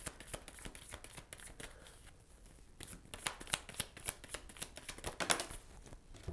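A deck of oracle cards being shuffled by hand: a run of quick papery flicks and clicks, coming in spurts with a brief lull just before the middle.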